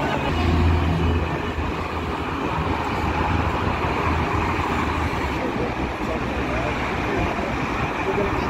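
Road traffic noise: a heavy vehicle's engine hums low as it passes close by in the first couple of seconds, then steady traffic noise carries on, with voices in the background.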